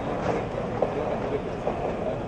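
Outdoor location sound: a steady rumbling background noise with indistinct fragments of men's voices.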